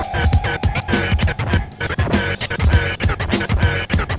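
Instrumental hip hop beat from a DJ mix with turntable scratching over the drums. A rising tone levels off in the first second.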